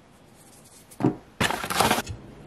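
A small plastic bowl handled on a kitchen countertop: a sharp knock about a second in, then about half a second later a short run of clattering and rustling.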